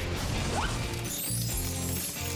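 Background music with a noisy, crash-like sound effect layered over it.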